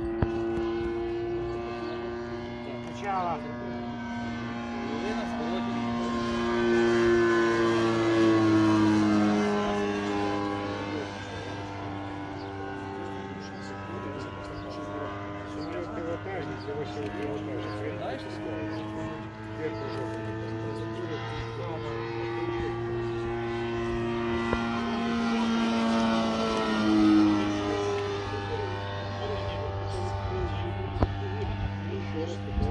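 Engine and propeller of a radio-controlled scale Bücker 131 biplane model in flight, running continuously. Its pitch rises and falls through the manoeuvres, and it swells loudest about eight seconds in and again near the end.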